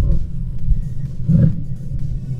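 Strong wind buffeting an action camera's microphone, a loud, uneven low rumble that surges and eases.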